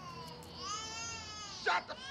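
A baby crying in long, high, wavering wails, with a short louder cry near the end.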